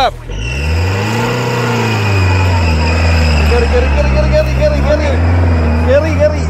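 A 4x4's engine revving under load as it climbs a rutted mud track, its pitch swelling up and dropping back several times.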